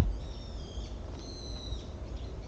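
A sharp click at the very start, then two high, drawn-out bird calls of a little over half a second each, the second higher than the first. A low rumble runs underneath.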